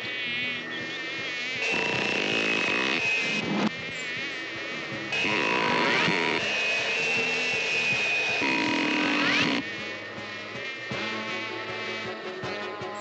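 Cartoon housefly buzzing with a wavering, wobbling pitch. Twice it is joined by a louder stretch of steady rushing whine from the canister vacuum cleaner, which starts and stops suddenly.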